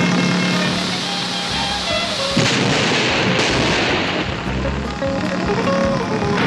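Background music over a stunt car's jump, with a loud crash and a rush of noise about two and a half seconds in as the Dodge Charger comes down.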